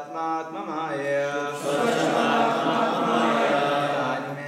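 Devotional chant sung by voices, a melody of held, shifting notes that goes on without a break.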